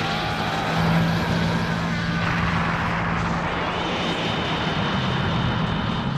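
Loud, steady droning roar of noise with a low hum held underneath, from the song's soundtrack as the track winds down.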